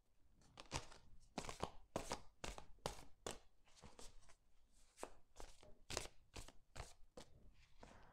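Faint, irregular soft clicks and slaps, a few a second, of a tarot deck being shuffled by hand.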